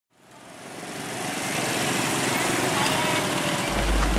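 Street traffic sound fading in: small motorcycle engines running close by, with voices mixed in.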